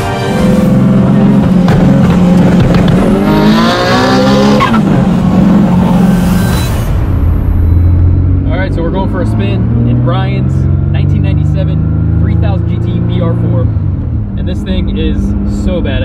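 Turbocharged Mitsubishi 3000GT VR-4 V6 accelerating hard, heard from inside the cabin, its pitch climbing through a pull in the first few seconds. After that it runs at a lower pitch that slowly rises, with voices over it.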